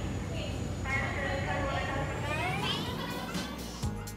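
A voice gliding upward in pitch for about two seconds over a steady low background hum, with music starting right at the end.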